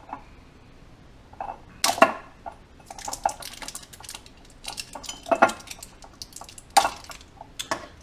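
Small glass drink bottle being handled and worked at its cap: scattered glassy clinks, taps and scrapes, loudest about two seconds in and again near seven seconds.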